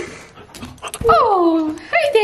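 A Bernese mountain dog puppy gives one long whine, about halfway through, that slides steadily down in pitch. Another whine starts right at the end.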